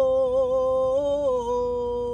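A man singing a manqabat (Urdu devotional poem) unaccompanied, holding one long note that wavers slightly and steps down a little in pitch just over a second in, heard inside a car cabin.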